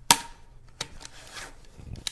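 Bedsheet fabric rustling and rubbing against the plastic air nozzle of a BedJet bed climate blower as the sheet is fitted over it, with a few sharp plastic clicks, the loudest just after the start.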